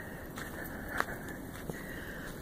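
Faint clicks and light crackle from a handheld camera being moved, over a steady low background hiss. The clearest click comes about a second in.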